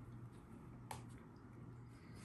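Near silence over a faint low hum, with one short sharp click about a second in.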